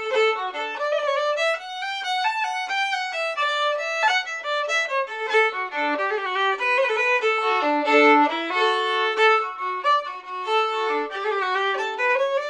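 Solo fiddle playing a traditional Irish jig unaccompanied: a single bowed melody line of quick, evenly paced notes, going on without a break.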